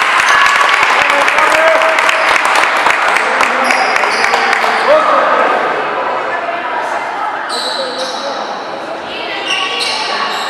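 A basketball bouncing on a wooden gym floor, dense sharp bounces through the first half, under many overlapping voices echoing in a large hall. In the second half short high squeaks, typical of sneakers on the court, come and go.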